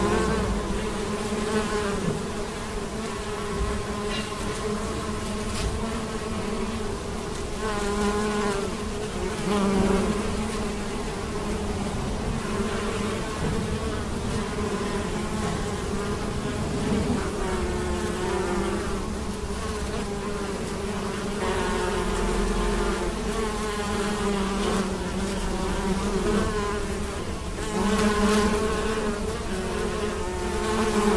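Many bees foraging on corn tassels, buzzing in a continuous hum whose pitch wavers up and down as individual bees pass close, with louder passes about eight to ten seconds in and near the end.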